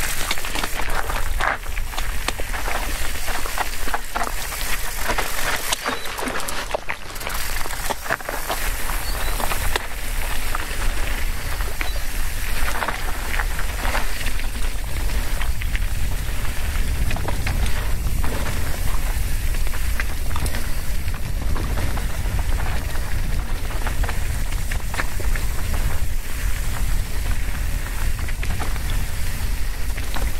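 Scott Spark RC 900 cross-country mountain bike descending rocky singletrack: knobby tyres crunching over loose gravel and stones, with steady clicks and knocks as the bike clatters over rocks, and a low wind rumble on the camera's microphone. It gets louder in the first second or so as the bike rolls off from almost a stop.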